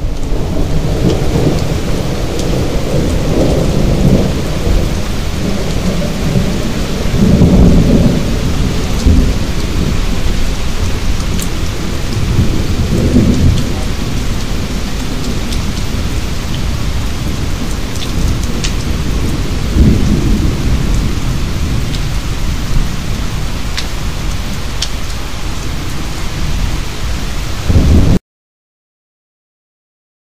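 Muddy floodwater rushing past at close range, a loud, steady roar of churning water with deep rumbling swells several times over, and a few sharp ticks.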